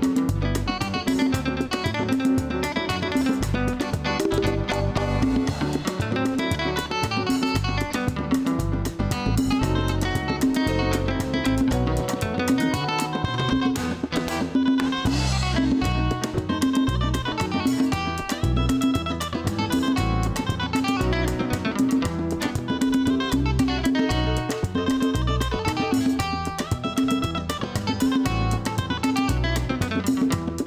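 Acoustic guitar playing a lively melodic lead over a live band of bass guitar, congas and drum kit, with a steady beat.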